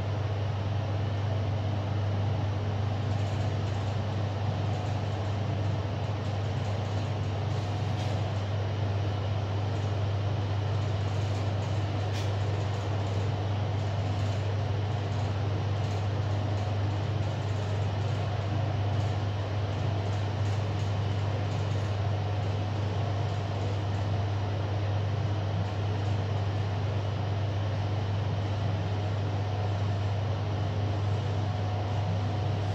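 KONE MiniSpace traction elevator descending at speed, heard from inside the car: a steady low hum over an even rushing noise.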